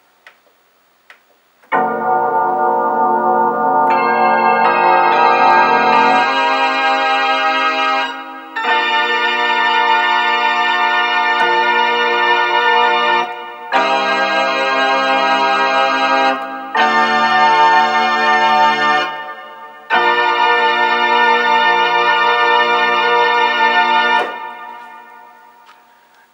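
Roland D-20 synthesizer played in split mode with both hands. A series of held chords starts about two seconds in and changes every few seconds, with low notes sounding under them, and the last chord fades away near the end.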